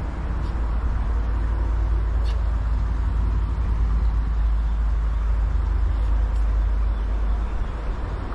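Steady low rumble of a motor vehicle.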